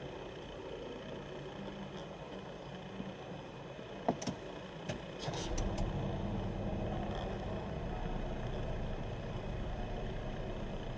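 Geely Okavango's 1.5-litre turbocharged three-cylinder engine starting, heard from inside the closed cabin: a few short clicks about four and five seconds in, then the engine catches and settles into a low, steady idle.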